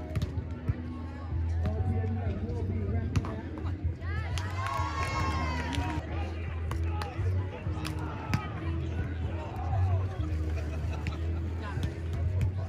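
Beach volleyball rally: a few sharp slaps of the ball being played by hand, among players' calls and nearby talk, over a steady low hum. A long, loud shouted call stands out from about four to five and a half seconds in.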